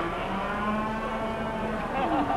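A Texas Longhorn heifer mooing: one long, steady call of nearly two seconds.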